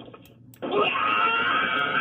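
A hoarse, drawn-out cry of pain, "ow", from a person voicing Shrek. It starts about half a second in and lasts well over a second.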